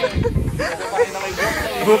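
A long hiss, with a person's voice talking beneath it.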